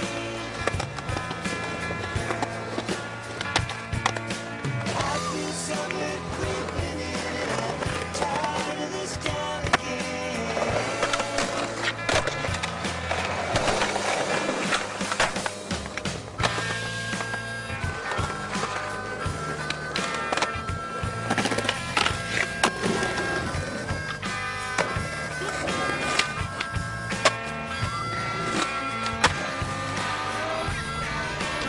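Skateboard wheels rolling on concrete, with frequent sharp clacks of the board popping and landing, mixed with a music soundtrack that has a sustained bass line.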